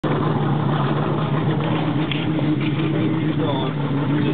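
Boat motor running steadily, a low even hum, with a voice briefly heard near the end.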